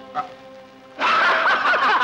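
Two men burst out laughing loudly together about a second in, after a quieter stretch with soft background music.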